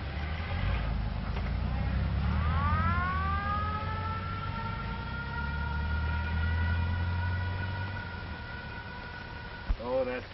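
Mechanical siren winding up from a low pitch to a steady wail, held for several seconds and cut off just before the end, over the low rumble of a car engine that fades out near the end.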